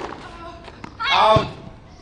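A tennis player's loud, high-pitched cry, about half a second long, starting about a second in, with a dull thud inside it.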